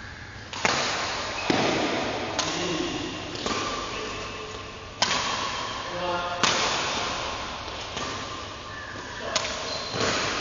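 Badminton rackets striking a shuttlecock back and forth in a rally, about eight sharp cracks a second or so apart, each ringing on in the reverberant hall.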